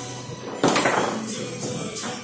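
Background music playing steadily, with one loud knock from play on the foosball table a little over half a second in: the ball or a rod's figures striking hard, with a short ring after.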